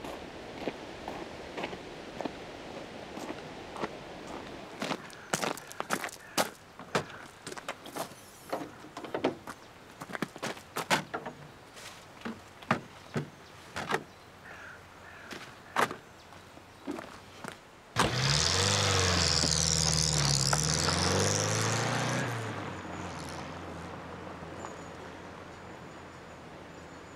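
Irregular sharp clicks and knocks, then about eighteen seconds in a car engine suddenly starts and revs loudly, its pitch rising and falling, for about four seconds before it drops back to a lower, steady running sound.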